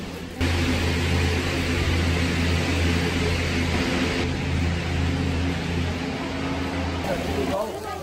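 Steady low machine hum under a loud hiss and a murmur of voices, as in a busy cable-car terminal station. It starts abruptly under a second in and stops shortly before the end.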